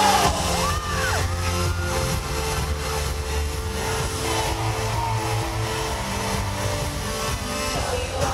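Live pop music over an arena sound system, recorded from the crowd: a steady, heavy bass with sustained tones. Several high gliding voices rise and fall over it about a second in.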